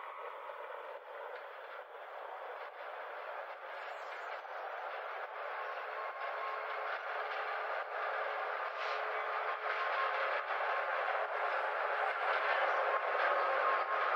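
A sound-design texture in a deathstep mix: a mid-range grainy noise with a few faint held tones and no beat or bass, slowly growing louder.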